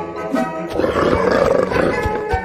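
Background music with a monster roar sound effect rising over it about a second in, a drawn-out rasping growl.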